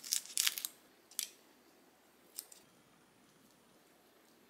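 Kitchen scissors snipping through a crisp lettuce leaf: a quick run of crunchy snips in the first second, then two single sharp clicks.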